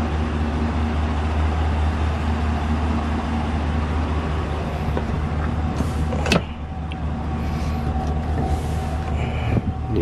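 Chevrolet Silverado 2500HD's V8 idling, heard from inside the cab as a steady low hum. A sharp click about six seconds in comes from the rear seat cushion being lifted.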